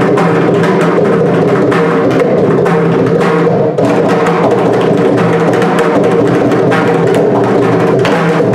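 Two mridangams played together in a fast, continuous stream of strokes, their tuned heads ringing, performing a mora, a cadential rhythmic pattern in misra jati ata tala of 18 aksharas.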